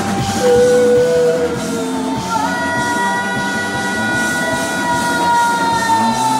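Live rock band playing, with long sustained notes held over the drums and guitar: one held note in the first two seconds, then another held from a little over two seconds in.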